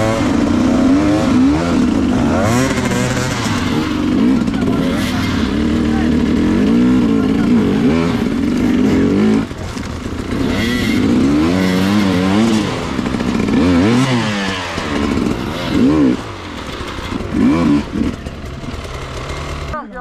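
Enduro dirt bike engines idling and revving, their pitch rising and falling again and again, with people talking over them.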